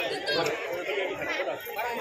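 Several people talking at once: overlapping chatter of a gathering.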